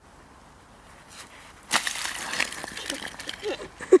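A thrown object strikes the frozen lake's thin surface ice about two seconds in, with a sharp crack followed by about a second and a half of crunching, skittering ice fragments.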